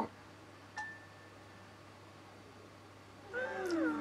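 Cartoon soundtrack: a single click with a short steady ringing tone about a second in, then a high-pitched voice sliding down in pitch near the end.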